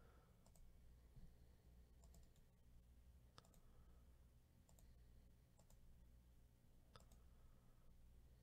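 Near silence with faint, sparse computer mouse clicks, several in quick pairs, over a low steady hum.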